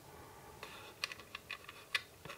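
Small plastic clicks and taps from a plastic camera case being handled and its parts fitted together: a faint rustle, then from about a second in a quick run of about six sharp clicks, the last one loudest.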